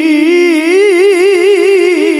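Melodic Quran recitation (tilawah) by a male qori into a microphone: one long unbroken held note with quick wavering turns in pitch.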